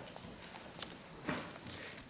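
Faint rustling of Bible pages being leafed through, with a couple of soft handling noises, over quiet room tone.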